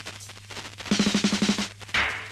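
A fast drum roll, about ten quick strokes in under a second, coming out of a low steady hum and ending on a loud hit just as a tune kicks in.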